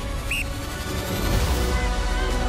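Music, with one short, high-pitched whistle blast about a third of a second in: the signal to start the race.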